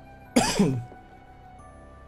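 A man clears his throat once, a short loud rasp about half a second in, over quiet background music.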